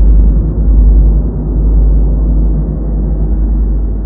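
Deep, loud rumbling drone with no high end, a dramatic sound effect laid over the scene, easing off slightly after about two seconds.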